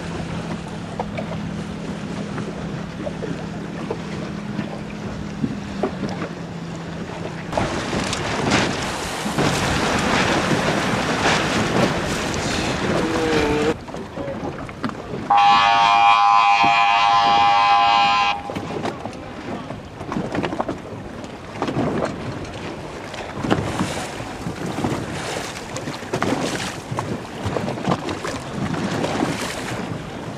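Wind buffeting the microphone and water rushing around a moving boat, with a low steady hum in the first seven seconds. About halfway through, a loud, long horn blast of about three seconds, a race signal horn.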